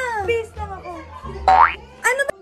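A high-pitched, excited voice laughing over background music, with a short, steeply rising squeal about a second and a half in.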